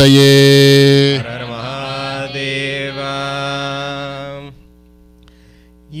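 A devotional chant held on one long steady note, loud for about the first second, then continuing softer until it stops about four and a half seconds in.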